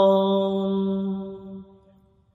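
A singer holding one long note at the end of a phrase of a Bangla Islamic song (gojol), fading away over about a second and a half into near silence.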